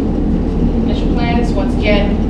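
Steady low rumble of background noise with no change in level, and a woman's voice starting up about a second in.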